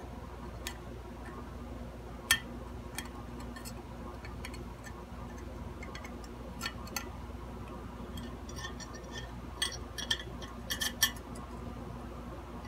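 Sparse small metallic clicks and taps as a hand tool and a soldering iron tip touch a wired guitar part and the ceramic plate under it while a wire is being unsoldered, with a cluster of clicks near the end. A faint steady low hum runs underneath.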